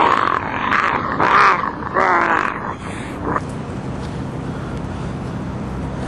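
A man's wordless vocal sounds: several drawn-out, wavering cries over the first three seconds or so, then only steady background noise.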